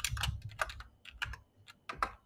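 Computer keyboard being typed: a quick run of key clicks in the first second or so, thinning to a few separate keystrokes toward the end as a terminal command is entered.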